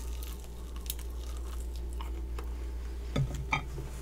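A person biting and chewing a grilled, sauced chicken wing close to the microphone: soft wet clicks and smacks, with two louder smacks a little after three seconds in. A steady low hum runs underneath.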